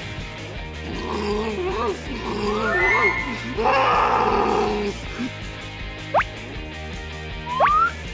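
A cartoon monster's wavering, crying vocal cry over background music, followed near the end by two quick rising sound effects.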